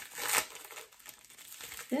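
Plastic packaging bag crinkling as it is handled, in a few rustles, the loudest about a third of a second in.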